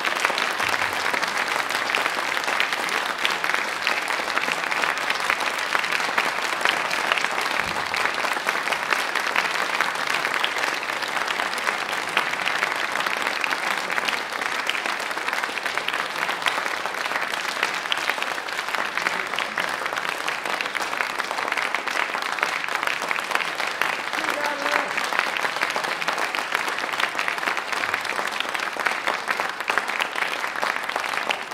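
Concert audience applauding steadily at the close of a live solo violin piece.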